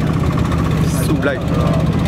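An engine running steadily with a low, even drone, under a man's short spoken words.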